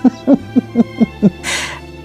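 A woman laughing in a run of short, pitched 'ha' pulses, about four a second, with a sharp intake of breath about a second and a half in, over faint background music.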